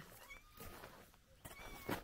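Domestic cat mewing: short, high calls, one near the start and a longer one near the end.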